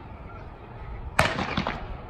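A single starting pistol shot about a second in, a sharp crack with a short ringing tail, firing the start of a 600 m race.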